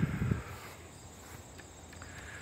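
Crickets chirring steadily in the background, with a brief low rustle in the first half second.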